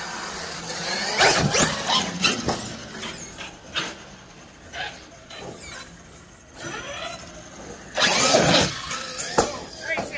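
Electric motor of a Traxxas large-scale RC truck whining up and down in bursts of throttle, the loudest bursts about a second in and near the end.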